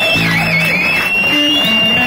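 Live band music: guitars and keyboard playing, with shifting low notes and a long high held tone over them.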